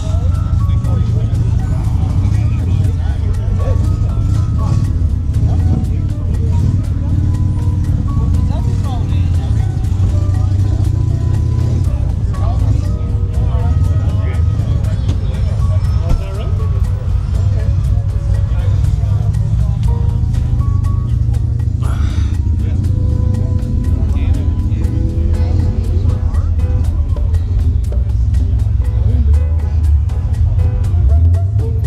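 A song with vocals and a heavy bass line, played steadily throughout.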